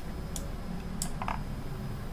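A few faint, sharp clicks over a low steady hum.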